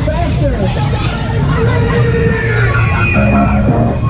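Fairground din: loud music mixed with voices and crowd chatter over the steady low rumble of a spinning Twister ride.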